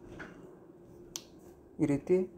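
A single sharp click about a second in, over a faint steady hum; speech begins near the end.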